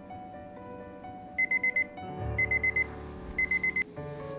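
Red digital kitchen timer's alarm going off: three quick groups of four short, high beeps, signalling that the countdown has run out. Soft background music plays underneath.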